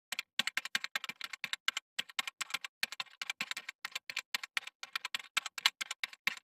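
Computer keyboard typing sound effect: quick, irregular key clicks, several a second, with short pauses between runs, as text is typed out on screen.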